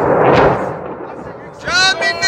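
Burning ammunition going off: one heavy blast about a third of a second in that rumbles away over the next second. Near the end a voice calls out.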